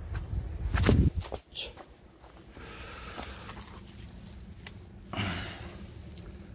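Footsteps through a garden bed and plants rustling against the legs and hands as someone moves and reaches into the greens, with a thump about a second in.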